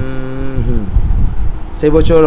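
A man humming a long, steady closed-mouth "hmm" while thinking. Its pitch drops away and fades under a second in. He starts speaking again just before the end.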